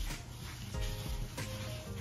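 Background music: held notes that change every half second or so, over a low beat.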